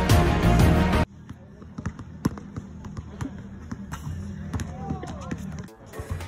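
Background music that cuts off suddenly about a second in, followed by a basketball bouncing on an outdoor hard court: several bounces at uneven spacing, the loudest about two seconds in.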